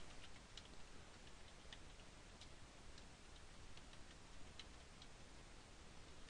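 Faint typing on a computer keyboard: scattered, irregular key clicks over near-silent room tone.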